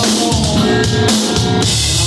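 Live rock band playing loudly: a drum kit prominent, with electric bass and electric guitar.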